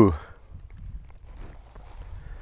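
White lion rolling on his back in buck dung on dry dirt and grass: faint, uneven scuffing and rustling of his body against the ground.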